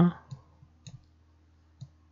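A few faint computer mouse clicks, three of them spread across two seconds, made while painting and orbiting in 3D software.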